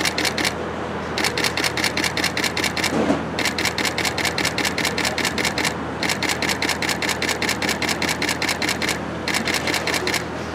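Camera shutters firing in rapid continuous bursts, about ten clicks a second, in runs of two to three seconds with short pauses between them, over a steady low background hum.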